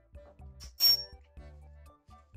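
Soft background music with one brief, bright metallic clink about a second in, from a metal valve extender being handled as it is screwed onto a tubular tyre's valve.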